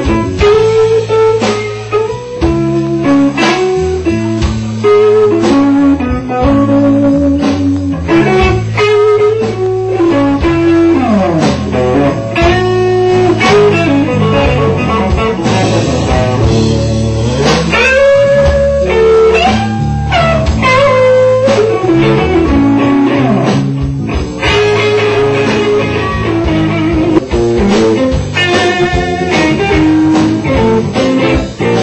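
Live blues band playing an instrumental passage: electric guitar playing a lead line with bent notes over bass guitar and drums.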